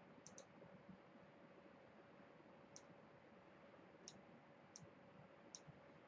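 Faint computer mouse clicks over near silence: a quick double click near the start, then four single clicks spread through the rest. A faint steady hum runs underneath.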